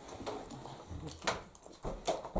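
Quiet kitchen with a few light knocks and clicks of tableware and household handling.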